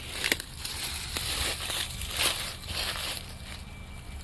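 Dry fallen leaves crunching and a deco-mesh wreath on a wire stand rustling as it is handled and stood back upright, in a run of short crackling bursts.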